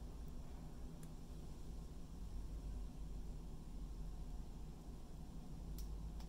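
Quiet room hum with faint handling of small plastic cable connectors being pushed together by hand, with two small clicks, one about a second in and one near the end.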